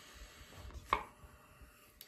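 Quiet handling of tarot cards on a cloth-covered table, with one short, sharp click about a second in.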